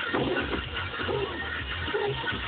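Pop music playing from a car radio inside the car's cabin.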